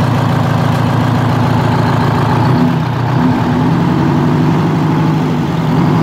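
Walter RDUL truck's big diesel engine running loud and steady, missing on one cylinder because the fuel lines were left off one injector. Its note rises and falls from about halfway through as it is revved to get the truck moving in gear.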